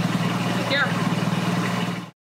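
Car engine idling with a steady low hum and an even pulse, a short high chirp sounding over it about a second in; the sound cuts off suddenly at the end.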